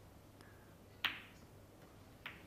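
Snooker cue ball striking a red: one sharp click of ball on ball about a second in, with a fainter tick earlier. It is the contact for an attempted long pot on the red beside the black, and the commentary says right after that it was not hit well enough.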